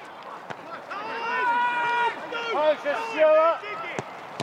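Footballers shouting on the pitch: long drawn-out calls, with two voices overlapping in the second half. A single sharp knock comes about half a second in.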